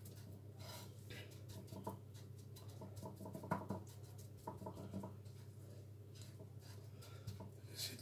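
Faint scratchy rustling of dry breadcrumbs as a fish fillet is pressed and turned in them by hand on a plate, over a low steady hum.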